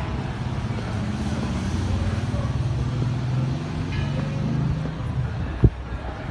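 An engine's low, steady hum that swells through the middle and eases off near the end, with a single sharp knock shortly before the end.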